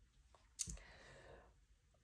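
Faint click of a tarot card being drawn off the deck, followed by a soft brushing of card against card.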